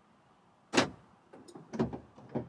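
Car door being worked from outside, heard from inside the cabin: a sharp latch-like clunk about a second in, then a few small clicks and a second clunk near the end.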